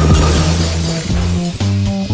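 Upbeat trailer music with a bass line, with a bright crash sound at the start that fades over about a second.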